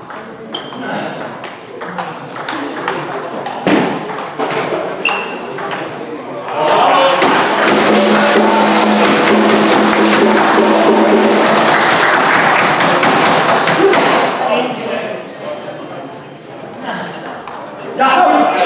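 Table tennis ball clicking back and forth off the bats and table in a quick rally. Then, about six seconds in, spectators break into loud shouting and cheering for several seconds, with a long held note in the middle, before it dies down.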